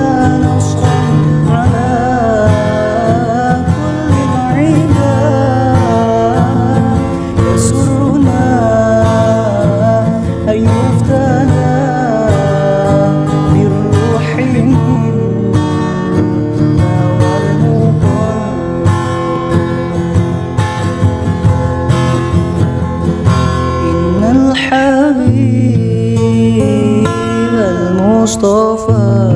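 An acoustic sholawat, an Islamic devotional song: a woman's voice singing over strummed acoustic guitar and a steady bass. The voice is strongest over the first dozen seconds, gives way to a mostly guitar passage, and comes back near the end.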